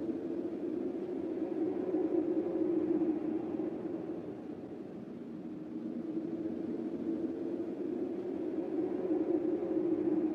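A low, steady rumbling drone with a few faint held tones, swelling and dipping slightly with a softer stretch midway.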